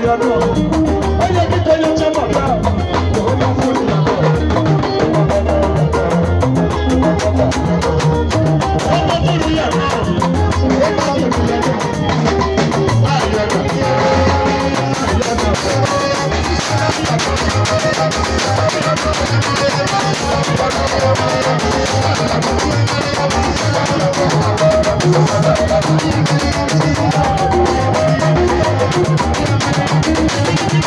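Live band music: a drum kit and guitar playing a steady, continuous groove, with a male singer on microphone.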